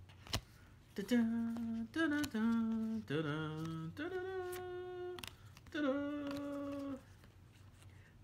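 A man humming a slow, wordless tune in about six long held notes that step up and down in pitch.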